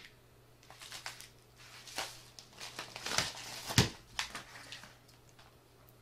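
Crinkling and rustling of packaging being handled and pulled off a heated ration pouch, in irregular bursts with a few small clicks and one sharp click a little past the middle.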